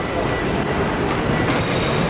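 Steady rumble and hiss of a passing train, with faint high thin tones above it.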